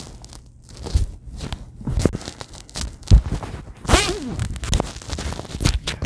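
Heavy hoodie fabric rustling and scuffing close to the microphone, with soft handling knocks at irregular intervals.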